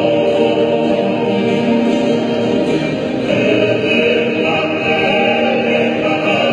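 A group of Tongan men sings a hiva kakala (Tongan love song) in full choral harmony behind a lead voice, accompanied by strummed acoustic guitars.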